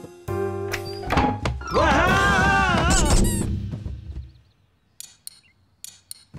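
Cartoon soundtrack: a few notes of music, then a thunk and a clatter as the characters topple onto the floor. A squeaky, wavering cartoon sound plays over it and fades out about four seconds in.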